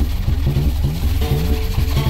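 Electronic beat built from samples of household objects: a steady deep sub-bass under a fast repeating low figure, with short held melodic notes over it.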